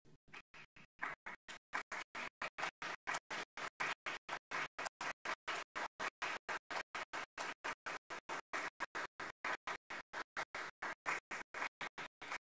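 Audience applauding, building up about a second in and holding steady. The sound is broken up by rapid, regular dropouts about five times a second.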